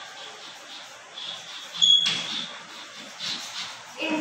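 Chalk scratching on a blackboard as words are written by hand. A short, high squeak stands out about two seconds in.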